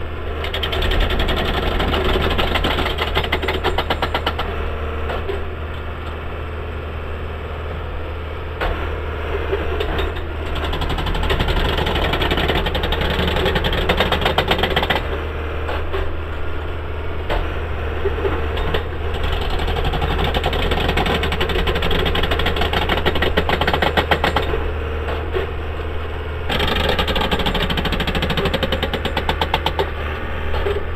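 A railway maintenance-of-way machine's engine runs steadily. Over it come stretches of fast, even mechanical rattling from the working machine, lasting a few seconds each and coming and going several times.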